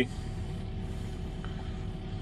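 Caterpillar 308 mini excavator's diesel engine idling, a steady low hum heard from inside the cab.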